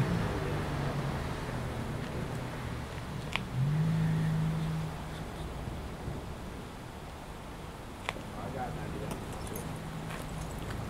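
Car engine idling with a steady low hum that steps up a little in pitch about three and a half seconds in and settles back a second or so later. Two sharp clicks come over it, one early and one near the end.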